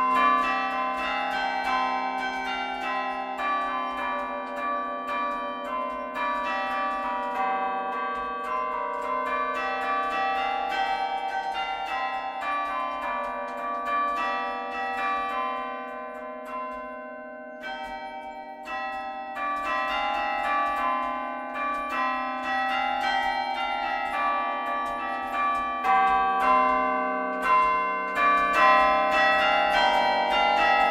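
A carillon being played from its baton keyboard: a continuous melody of struck bell notes, each ringing on under the next. There is a brief lull about seventeen seconds in before the playing picks up again.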